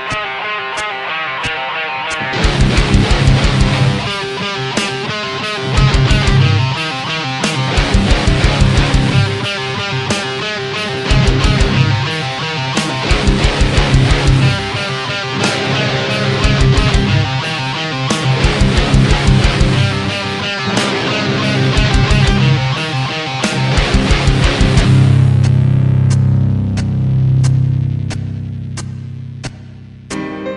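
Instrumental passage of a heavy screamo/rock song: electric guitars, bass and drums playing loud, with the band coming in fuller about two seconds in. Near the end the highs drop away and a held low chord rings on, fading.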